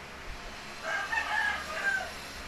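A rooster crowing, starting about a second in and lasting about a second, as a broken, wavering call.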